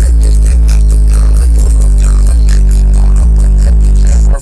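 Music with heavy bass played loud through a car stereo, a deep bass note changing about once a second.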